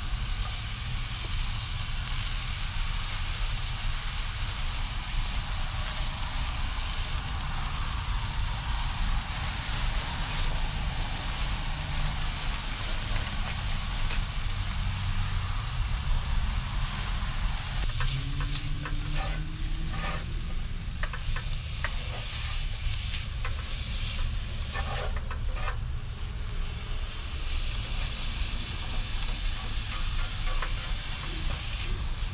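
Chopped chicken and peppers sizzling in a heavy skillet over a portable gas stove turned up high, a steady hiss over a low rush of burner flame. About two-thirds of the way in, a utensil starts scraping and clicking against the pan as the food is stirred.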